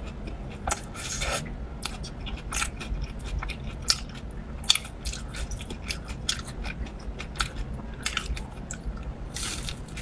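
Close-miked chewing of a cheese-coated corn dog (battered sausage on a stick): irregular wet mouth clicks and crackles, with two sharper clicks near the middle.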